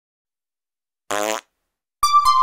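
A cartoon fart sound effect: one short, buzzy blat about a third of a second long, about a second in, with silence around it.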